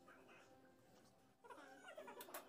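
Near silence: room tone, with a faint pitched sound that rises and falls in the last half second.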